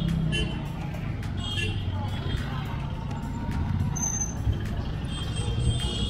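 Cars and a motorbike driving past on a road, a steady low engine and tyre rumble.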